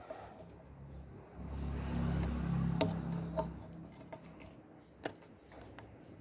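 Small sharp clicks of hard plastic parts of a mini nano mist sprayer being handled and pried apart by hand, the loudest about three seconds in. A low rumble, like a vehicle passing, swells up and fades away in the middle.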